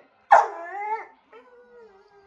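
A brindle-and-white bulldog-type dog gives one loud, drawn-out bark-howl about a third of a second in that falls slightly in pitch as it fades.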